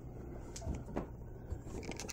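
Quiet room with a few faint, soft knocks about half a second apart.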